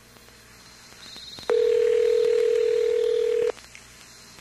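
A single steady telephone tone, about two seconds long, starting about a second and a half in and cutting off suddenly, over faint line hiss.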